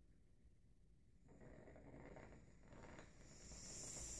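Air blown through the blue water line of a water-cooled TIG torch hose, pushing the coolant water out of it: a faint hiss that starts about a second in and grows louder toward the end.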